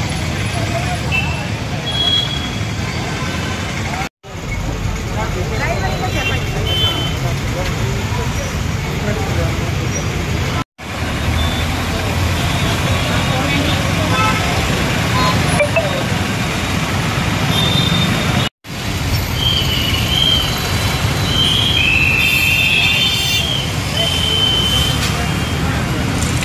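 Busy city road traffic: a steady rumble of passing vehicles with several short horn toots, most of them in the last third. The sound cuts out briefly three times.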